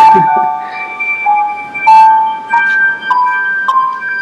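Synthesized notes from a plant-music device, which turns a plant's electrical signals into keyboard notes, played back from a recording. It plays a series of clean, sustained tones, one about every half second, stepping up in pitch note by note.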